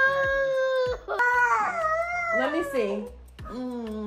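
A toddler boy crying after hurting himself, in long drawn-out wails: one held cry, then a second that falls in pitch, and a third starting near the end.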